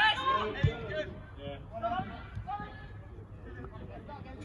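Voices shouting across a football pitch, loudest in the first second and fainter after. A single dull thud comes a little over half a second in.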